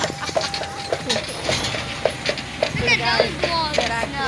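Carriage horse's hooves clip-clopping at a walk, a steady run of knocks on the road. Near the end a high, sliding voice sounds over the hooves.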